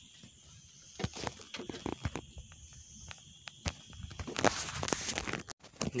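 Irregular clicks and knocks of hands handling catch and tackle on a wooden boat, then about a second of dense rustling near the end. A steady high insect drone sounds in the background.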